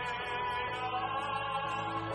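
A worship team of a man and two women singing a Korean praise song with acoustic guitar, the voices holding long notes on 'alleluia'.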